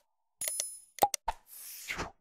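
Subscribe-animation sound effects: cursor clicks with pops, a short bell-like chime about half a second in, a few more quick clicks around a second in, then a whoosh near the end.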